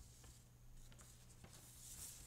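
Near silence, with faint rustling of paper sheets being handled, swelling near the end, over a low steady hum.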